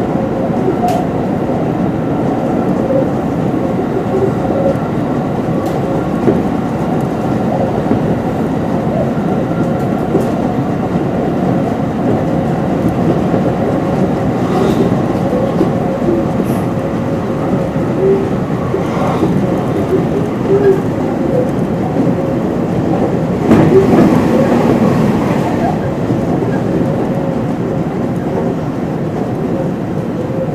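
Hanshin electric train running at speed, heard from just behind the driver's cab: a steady rumble of running noise with a faint steady tone and scattered clicks. The noise swells for a couple of seconds about three-quarters of the way through.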